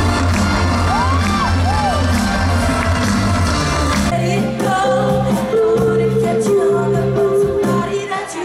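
Live band playing amplified music with a singer, heard from the audience in a large hall. About four seconds in, the heavy bass and drums drop away and a long held sung note carries on.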